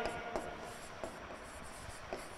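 Faint scratching and a few light taps of a pen writing on an interactive display board.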